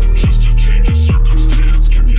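Instrumental hip hop beat: a deep, steady bass with booming kick drums that fall in pitch, and a brief break in the bass about halfway through.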